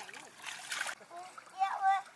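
A short splash of water about half a second in, then a child's high voice briefly near the end.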